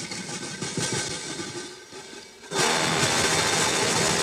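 Live big-band jazz recording: a sparse, choppy passage, then about two and a half seconds in the full ensemble breaks suddenly into a loud, dense, noisy wall of sound that holds steady.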